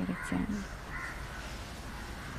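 The tail of a spoken word, then two short faint bird calls about a second apart over steady outdoor background noise.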